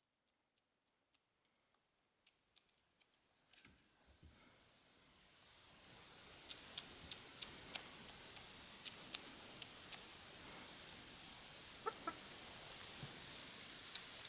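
Chickens pecking grain, heard as a quick run of sharp, faint clicks that starts about halfway through. A short, low cluck comes near the end.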